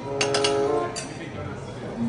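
Metal serving tongs clinking against a buffet tray and plate: a quick cluster of sharp clinks, then one more about a second in.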